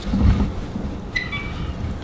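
A rumble of thunder with a rain-like hiss, fading away, with a short beep about a second in.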